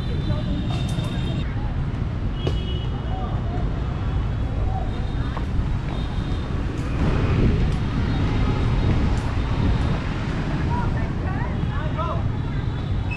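Outdoor city ambience: a steady low rumble of traffic with faint distant voices, a few sharp taps in the first two seconds, and some short, high steady tones.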